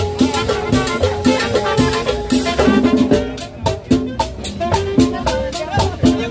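Live band playing Latin dance music, with drums and percussion keeping a steady beat under held melodic notes.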